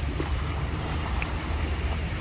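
Wind buffeting the microphone, a steady low rumble, over the wash of shallow bay water.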